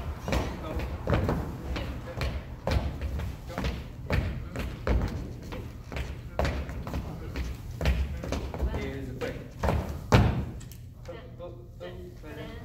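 Dancers' shoes stepping and stomping on a wooden floor through a Lindy Hop combination: an uneven run of thumps, about one to two a second, with the loudest stomp about ten seconds in.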